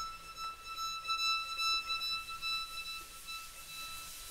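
Solo violin holding one long high note that fades away about three and a half seconds in.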